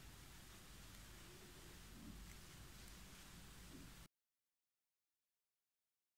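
Near silence: faint room hiss that cuts to complete silence about four seconds in.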